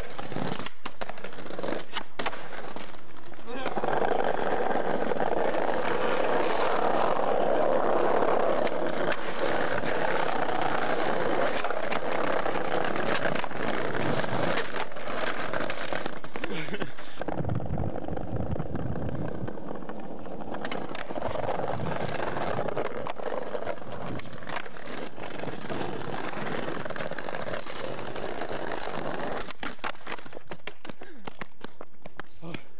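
Skateboard wheels rolling over paving stones, loudest from about four to twelve seconds in, with several sharp clacks of the board striking the ground during tricks.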